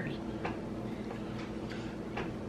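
Quiet room with a steady low hum and a few faint, short clicks.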